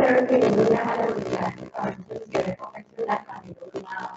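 A person's voice, heavily garbled and distorted as it comes over a video call. It is densest in the first second and a half, then breaks into choppy fragments.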